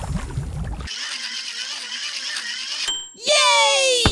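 Two cartoon voices give a loud excited cheer, falling in pitch, about three seconds in. Before it there is a quieter steady hum and a brief high beep.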